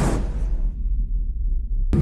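Sound effect of an animated logo intro: a whoosh that dies away within the first half second, leaving a low, throbbing rumble.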